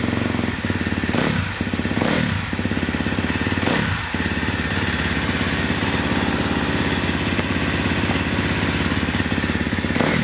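KTM 250 SX-F motocross bike's single-cylinder four-stroke engine running on the stand. It is blipped up on the throttle three times in the first four seconds, then settles into a steady idle.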